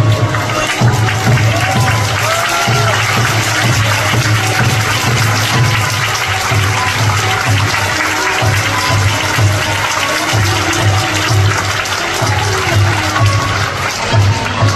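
Audience applause over music with a steady low drum beat, about two beats a second.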